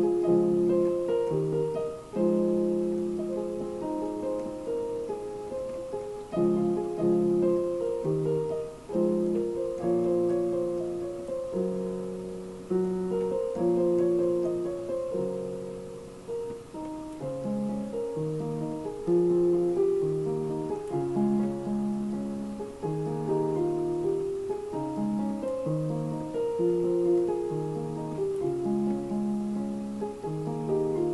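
Yamaha digital keyboard's piano voice playing two-handed chords in D-flat major, built on D-flat major seventh, F minor and E-flat major chords. Each chord is struck and left to fade before the next, changing every second or two.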